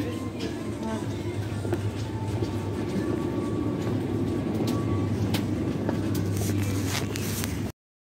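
Supermarket background: a steady low hum with faint voices, music and occasional clicks, cutting off suddenly near the end.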